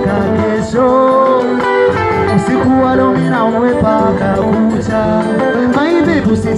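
Live band music: electric guitar playing with a singer's voice over it, loud and continuous.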